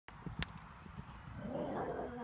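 Hoofbeats of a horse cantering on a sand arena: soft, irregular low thuds, with a couple of sharp clicks in the first half second and a brief blurred louder sound near the end.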